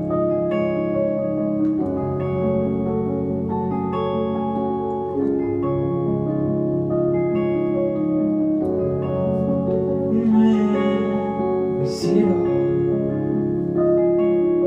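Live band playing an instrumental passage: sustained keyboard chords with pedal steel guitar notes gliding over them. There is a brief sharp, bright hit about two seconds before the end.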